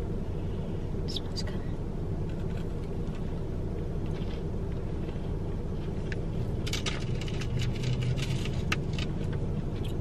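A person chewing a soft cookie, with small mouth clicks and smacks about seven to nine seconds in, over a steady low hum inside a parked car's cabin.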